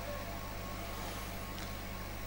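Steady low electrical hum with faint hiss from a public-address microphone and amplifier, with no voice.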